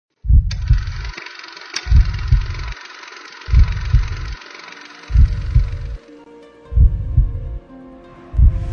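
A slow heartbeat-like pulse in a music soundtrack: low double thumps about once every 1.6 seconds, five times. Under it runs a steady hiss with two sharp clicks in the first two seconds, and held musical tones come in around six seconds as the hiss fades.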